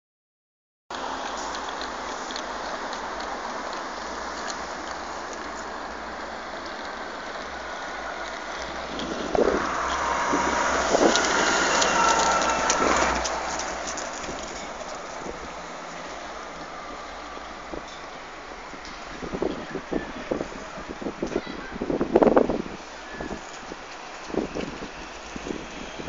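Van Hool AG300 articulated city bus driving past close by: its engine and tyre noise swells to a peak with a faint whine, then fades, over steady traffic and wind noise. Later come a few sharp knocks and clatters.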